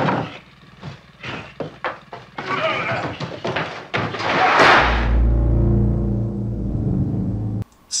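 Film soundtrack: scraping and knocks as a body is dragged across a floor, then a heavy metal sliding door slammed shut with a loud clang about four and a half seconds in. A low steady hum follows the slam and cuts off shortly before the end.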